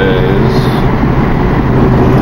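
Car driving at a steady speed, heard from inside the cabin: a steady rumble of engine and tire road noise with a low hum.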